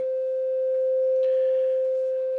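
Steady single-pitch whistle from a radio receiver: the beat note of the Heathkit VF-1 VFO's unmodulated carrier, tuned in near 3.74 MHz on 80 meters, showing the VFO is putting out a signal. A faint hiss joins it about halfway through.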